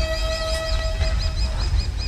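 A rapid run of high, bird-like chirps, about six a second, over a low rumble, with a held steady tone that fades out about a second in.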